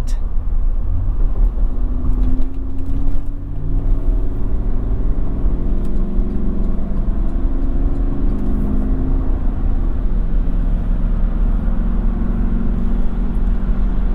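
6.2-litre V8 of a 2007 GMC Yukon XL Denali heard from inside the cabin, accelerating up to highway speed over a steady low road rumble. Engine pitch rises for the first few seconds, drops at a gearshift about three and a half seconds in, then climbs again more gently and settles.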